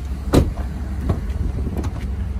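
Door of a 2013 Chevrolet Tahoe being handled: one sharp clack about a third of a second in, then two lighter clicks, over a steady low rumble.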